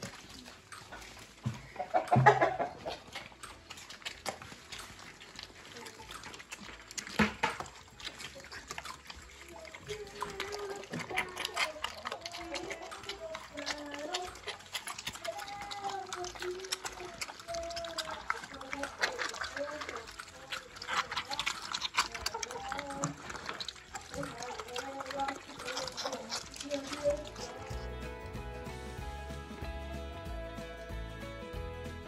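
Pigs eating a pile of peach scraps: wet chewing and smacking, with a couple of knocks in the first several seconds and short high calls from about ten seconds in. Music begins near the end.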